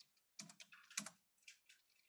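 Faint computer keyboard typing: a quick, uneven run of separate keystrokes, the loudest about a second in.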